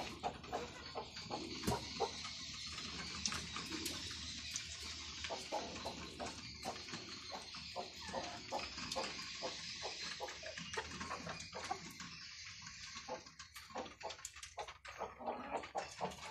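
Flock of native chickens pecking feed from a bowl: a quick, irregular run of light clicks, thinning out and growing quieter after about twelve seconds.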